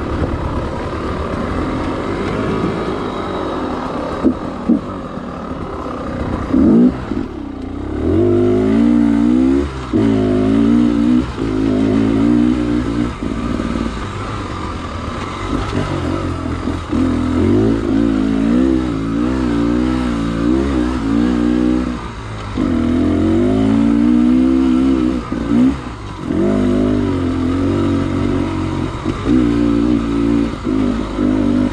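Dirt bike engine revving up and down with the throttle while being ridden, its pitch rising and falling every second or two.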